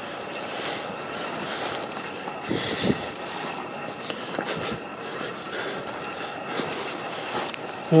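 Footsteps and brushing through dry scrub: twigs and leaves rustling and crackling at an uneven pace, slightly louder about two and a half to three seconds in.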